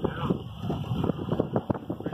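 A car driving over bumpy beach sand, heard from inside: a rapid, irregular rattling and knocking over a low rumble, with some wind.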